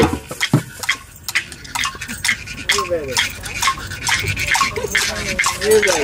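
Sparse, irregular clicks and rattles of hand percussion, sticks and shakers, from a small part of a drum circle that keeps playing while the rest of the group has stopped, with a few voices among them.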